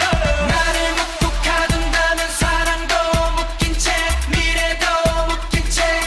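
K-pop dance song performed live: male vocals singing over a pop backing track with a steady kick-drum beat, about two beats a second.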